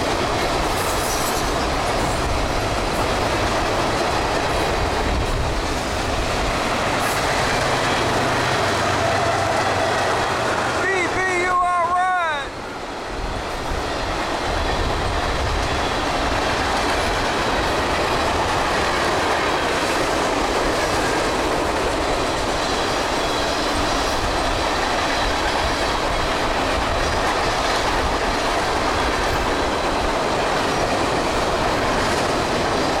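Freight train tank cars rolling past close by: steady rumble and rattle of steel wheels on rail. A brief wavering pitched sound rises and falls around twelve seconds in, just before a short dip in the noise.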